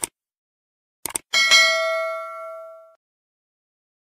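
Subscribe-button animation sound effect: a mouse click, a quick double click about a second in, then a bright notification-bell ding that rings out and fades over about a second and a half.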